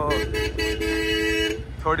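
A vehicle horn sounds one steady blast lasting about a second and a half. Beneath it runs the regular low thump of a Royal Enfield Bullet's single-cylinder engine riding in traffic.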